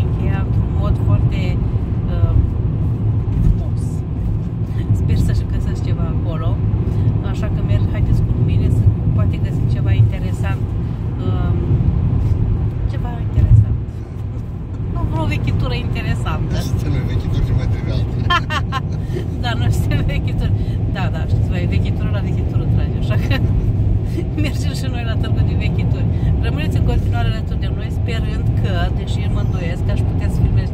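Road and engine noise inside a moving car's cabin: a steady, loud low rumble, with a brief louder jolt about halfway through.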